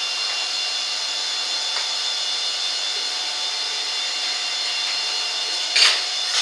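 Steady, even hissing rush with a few faint high tones, from a powder flame-spray metallizing gun spraying metal onto a motorcycle crankshaft journal turning in a lathe.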